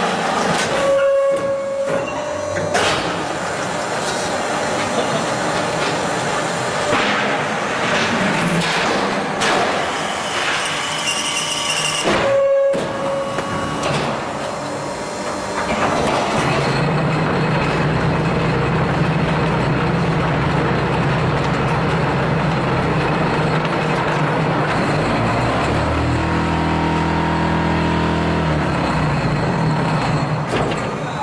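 QT10-15 hydraulic concrete block making machine working through a moulding cycle, with irregular clanks and hiss from its moving mould and press. About sixteen seconds in, a steady low hum sets in, typical of the vibrating table compacting the mix in the mould. Near the end the hum changes pitch.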